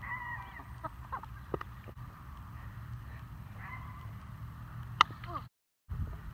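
A plastic wiffleball bat strikes a wiffle ball once, a sharp crack about five seconds in and the loudest sound here. Faint calls are heard in the background before it.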